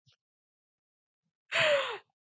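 About a second and a half of silence, then a woman's breathy, laughing sigh near the end, falling in pitch.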